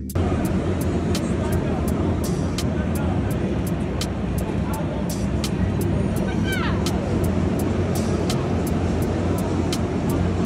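Busy indoor karting hall: kart engines running with people's voices, a regular ticking about four times a second over it, and a short call about six and a half seconds in.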